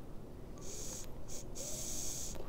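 Hiss of a vape being drawn on, air pulled through the atomizer as the coil vaporises the liquid, in three stretches starting about half a second in, the longest near the end.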